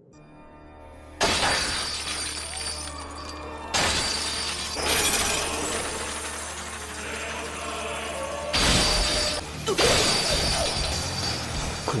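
Anime battle sound effects over dramatic background music. After a quiet first second with a faint rising hum, sudden loud crashing effects come in about a second in, again near four seconds and at about eight and a half seconds, with a steady low hum underneath.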